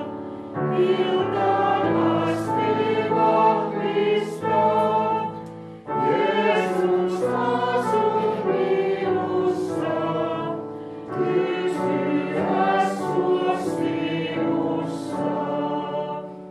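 A congregation singing a Lutheran hymn with sustained electric-keyboard accompaniment, in phrases that pause briefly about six and eleven seconds in.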